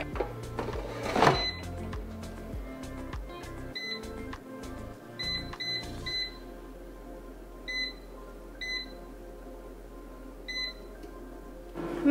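Innsky air fryer's touch control panel beeping, about eight short beeps at irregular intervals as the temperature and timer are set. Its fan starts a low, steady hum about halfway through. A few knocks from the basket going back in come near the start, all over background music.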